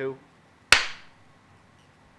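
A single sharp clap about three-quarters of a second in, ringing off briefly.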